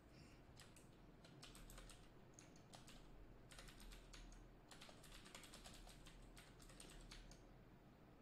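Faint typing on a computer keyboard: quick runs of keystrokes with short pauses between them.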